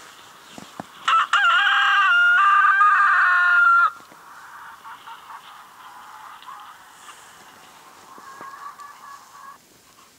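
A rooster crowing once: a long crow of about three seconds, the loudest sound here. Much quieter calling follows and fades out shortly before the end.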